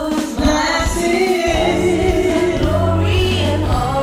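Women's voices singing a gospel praise song together over instrumental accompaniment with a steady bass line.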